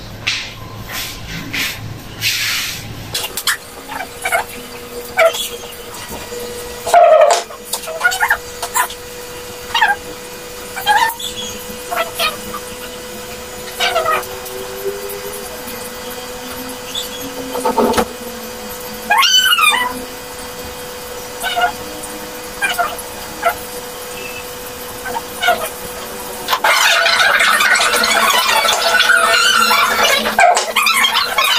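Short yelping animal cries, each rising and falling in pitch, come every second or two over a steady low hum. About three and a half seconds before the end a louder, sustained sound from the television starts.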